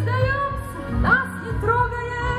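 A waltz song, a woman singing over instrumental accompaniment, her voice gliding between held notes.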